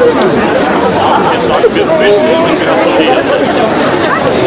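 Crowd chatter: many people talking at once close around, overlapping voices with no single clear speaker.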